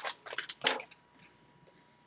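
A hockey card pack's wrapper crinkling as it is torn open and handled: a few short crackles in the first second.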